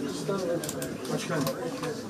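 Indistinct voices of several people talking at once in a small, crowded room, with a quick run of sharp clicks about halfway through.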